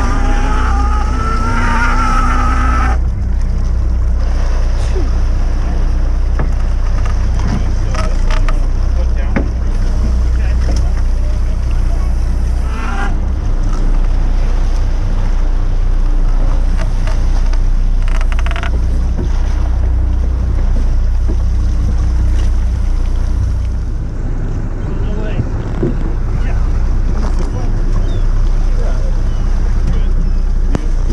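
Steady low drone of a sportfishing boat's engine, with water noise along the hull and a few brief knocks. A wavering pitched sound fills the first few seconds, then stops abruptly.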